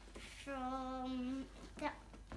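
A young girl singing a children's song: one long held note, then a short sung syllable near the end.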